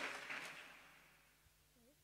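Near silence: room tone with a faint steady hum, as the room's echo of a last spoken word dies away in the first moment.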